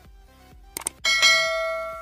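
Subscribe-animation sound effects: a quick pair of mouse clicks about three-quarters of a second in, then a notification-bell ding struck once just after a second in, the loudest sound, ringing on and slowly fading.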